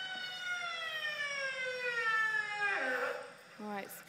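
Recorded whale call played over loudspeakers: one long, high call that slowly falls in pitch, then drops sharply and stops about three seconds in. A short, lower sound follows near the end.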